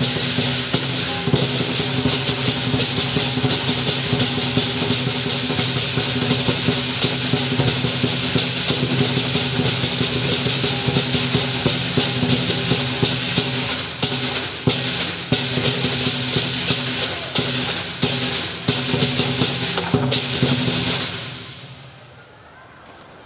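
Lion dance percussion of drum, cymbals and gong playing continuously with many sharp strikes over ringing metal tones, dying away near the end.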